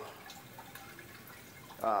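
Faint, steady spray and drip of water inside a five-gallon-pail plant cloner, fed by a small submersible pump of about 264 gallons an hour through a 360° sprayer nozzle.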